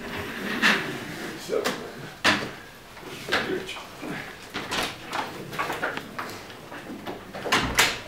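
Chairs and furniture being moved as people get up and change seats at a table: irregular knocks, scrapes and rustles, the sharpest about two seconds in and near the end.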